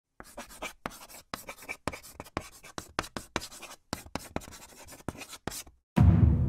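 A rapid run of short scratching, clicking strokes in bursts, broken by brief gaps of dead silence.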